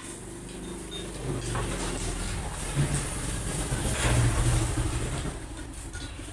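A motor vehicle's engine passing by, a low rumble that grows louder to a peak about four seconds in and then fades.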